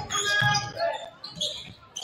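A basketball bouncing on a hardwood gym floor during play, a few bounces in the first second, with voices in the gym around it.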